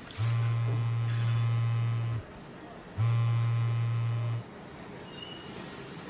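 A mobile phone buzzing twice: a steady low buzz of about two seconds, then a shorter one after a brief gap.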